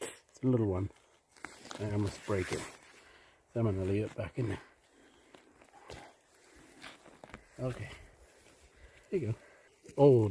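Several short bursts of a voice, murmured words or exclamations, between stretches of soft rustling and scraping as gloved hands and a small knife work loose soil and forest litter around matsutake mushrooms.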